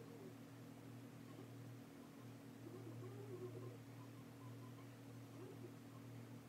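Near silence: quiet room tone with a low steady hum.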